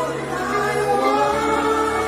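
Slow gospel worship song sung by a choir, with long held notes over a steady sustained accompaniment.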